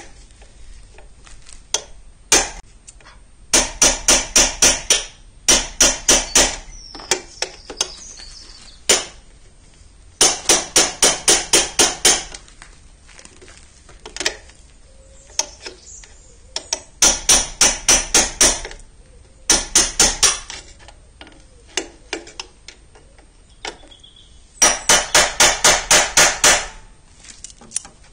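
Hammer blows on a steel socket extension held against the hub of a Citroën 2CV's cooling fan, in quick runs of about five strikes a second with short pauses between, knocking the fan off its taper fit on the end of the crankshaft.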